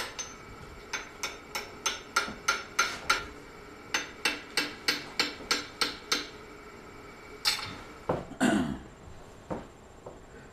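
Hand hammer striking a small red-hot iron lock bolt on an anvil, then held in a vise, in two steady runs of about four blows a second with a ringing metal tone. This is forge work setting the bent corner of the bolt. A few louder, irregular knocks follow near the end.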